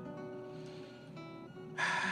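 Soft sustained notes of background music. Near the end a Spanish guitar chord is strummed loudly and rings on: the requested gentle Latin guitar music begins.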